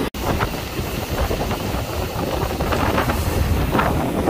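Strong wind buffeting the microphone over rough surf breaking on the shore and around a swamped boat, with a few splashes. The sound cuts out for an instant just after the start.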